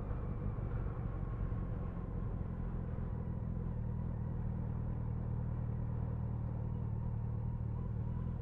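Motorcycle engine running at a steady cruising speed, heard from a camera mounted on the bike: an even low drone with a faint steady whine above it and a wash of wind and road noise.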